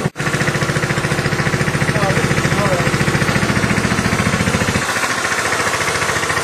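Small 100cc go-kart petrol engine idling with an even, rapid pulsing beat. There is a very brief break just after the start. About five seconds in, its low rumble falls away, leaving a thinner, higher hum.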